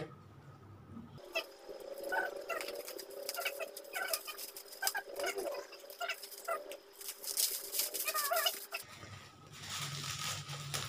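Plastic bubble-wrap packaging crinkling and crackling as it is handled and cut open with a craft knife, with many short squeaky chirps mixed in.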